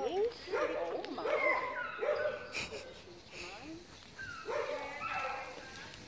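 A dog whining and yipping in short, high-pitched calls that rise and fall, in two bouts: one in the first few seconds and another about four and a half seconds in. It is excited vocalising as it greets another dog on lead.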